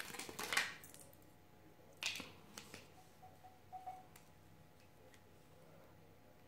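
Small clear plastic packaging crinkling and rustling in the hands, in a flurry at the start and a sharper burst about two seconds in, followed by a few faint clicks.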